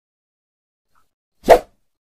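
A single short pop sound effect about one and a half seconds in, as an animated subscribe button pops onto the screen.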